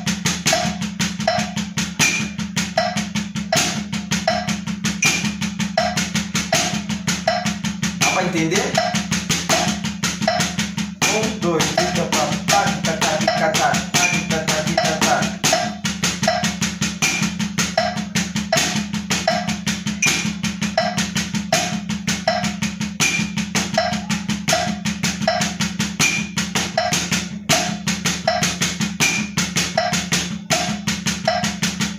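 Drumsticks playing a steady, even practice-pad exercise in the sticking right, left, right-right, left, right-right, left, against a metronome clicking at 80 beats per minute. A steady low hum runs underneath.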